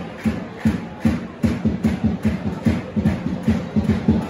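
A single bass drum in a football crowd, beaten in a steady rhythm that speeds up from about two beats a second to about five, over the general noise of the crowd.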